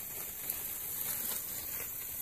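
Outdoor ambience: a steady high-pitched hiss with no distinct event.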